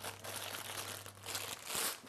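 Plastic bags crinkling as they are handled around metal bicycle crank arms, a little louder near the end.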